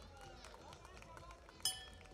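A boxing ring bell struck once, a short bright ring that dies away quickly, signalling the start of round 1. Faint hall chatter runs underneath.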